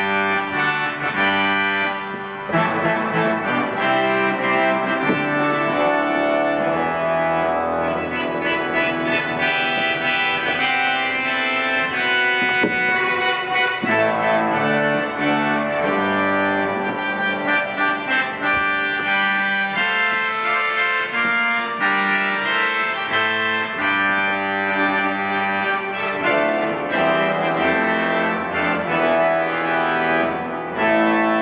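1964 Balbiani Vegezzi-Bossi pipe organ played with the swell's harmonic trumpet reed stop and the super-octave coupler, which adds a 4-foot clairon sound above the 8-foot trumpet. It plays a continuous fanfare of changing chords, with a brief drop in level a couple of seconds in.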